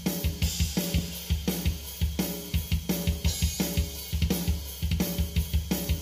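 EZDrummer 2 virtual drum kit playing a double-kick metal groove at about 170 BPM: fast bass drum under steady snare and cymbal hits, about three beats a second.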